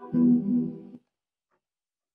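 A preset preview from the Output Arcade 'Particles' sample instrument: a short pitched musical phrase plays and fades out about a second in, part of stepping from one preset to the next.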